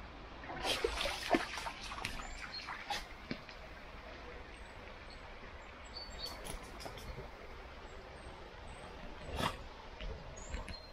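Woodland stream ambience: water trickling faintly under short, high bird chirps. A run of crackles and clicks fills the first few seconds, and one sharper click comes near the end.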